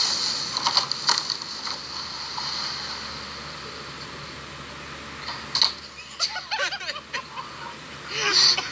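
A plastic kayak scraping down a bank of dry leaves and splashing into water, with a few sharp knocks, then the wash of water as it tips over. About five and a half seconds in there is a sudden sharp noise, followed by short wavering calls.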